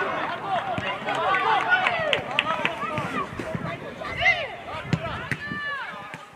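Several voices shouting and calling over one another at a football match, with one long drawn-out shout near the end.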